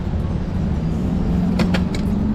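Low rumble of street traffic with a steady engine hum, and a few short clicks near the end.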